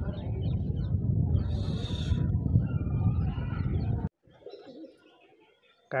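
Outdoor ambience with a low rumble on the microphone and a bird calling. About four seconds in, it cuts abruptly to a much quieter background.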